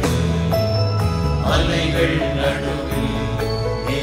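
Music: a men's choir singing a Tamil Christian song to instrumental accompaniment with a steady beat.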